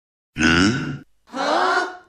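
A man's two wordless exclamations of shock, each under a second long, the second rising slightly in pitch.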